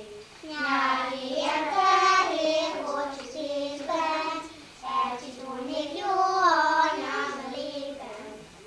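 A group of young children singing a melody together, with brief pauses for breath between phrases.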